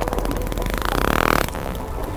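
Dolphin echolocation click train: a rapid, even run of clicks.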